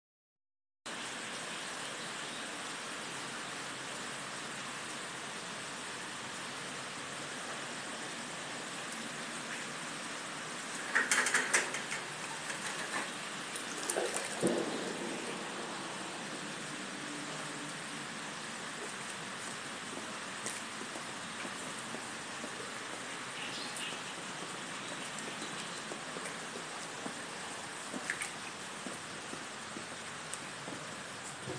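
Steady hiss of rain. A few louder knocks and clatters come about eleven and fourteen seconds in.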